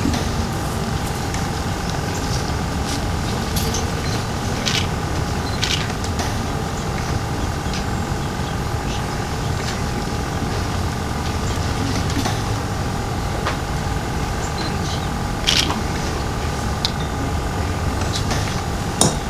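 A steady mechanical hum that holds several fixed tones over a low rumble, engine-like and unchanging, with scattered small clicks and knocks.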